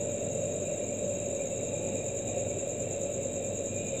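Steady background hum with a continuous high-pitched whine running through it, unchanged throughout.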